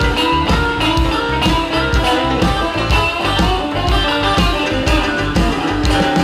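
Electric blues band playing an instrumental passage: guitar lines over a steady drum beat.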